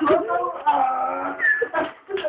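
A young person's voice making wordless, wavering vocal noises, the pitch sliding up and down.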